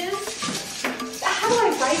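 Metallic rattling and clicking from a steel tape measure held extended along a wall, over background music.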